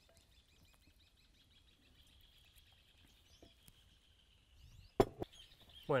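Quiet outdoor background with a faint, steady high-pitched trill, then one sharp knock about five seconds in.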